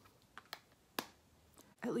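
Three small, sharp clicks in the first second, then a woman begins to speak near the end.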